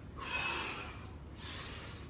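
A man breathing hard through the mouth: two audible breaths, the first about a second long and the second shorter, taken while swinging the arms up during an exercise warm-up.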